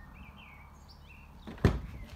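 Quiet, with a few faint high chirps in the first half, then a single sharp thump about a second and a half in.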